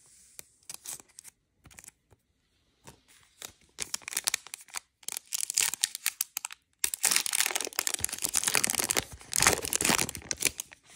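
A Prizm football trading-card pack being torn open by hand, its wrapper crinkling. A few small crackles come first, then denser tearing and crinkling, growing louder and continuous through the second half.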